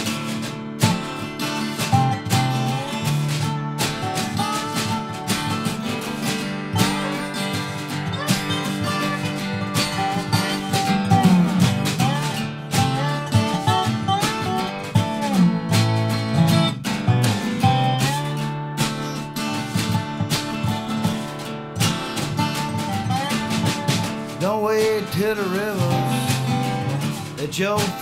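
Instrumental break of a country song played live: strummed acoustic guitar and snare drum keeping time, with a dobro playing a slide lead of gliding, wavering notes. The singing comes back in at the very end.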